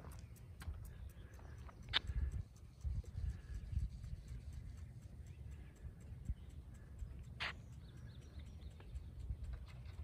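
Wind rumbling on the microphone outdoors, with two brief sharp sounds, one about two seconds in and one about seven and a half seconds in.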